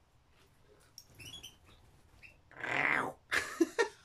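A woman coughs once, then laughs in a few short bursts near the end. Faint chirps from caged pet birds come about a second in.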